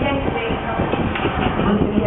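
Barber's steel scissors clicking rapidly and continuously while trimming hair, a dense clattering rhythm.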